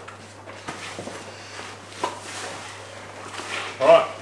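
Gear being handled on a table: rustling of backpack fabric with a few light knocks, as a water bottle and pack are moved about.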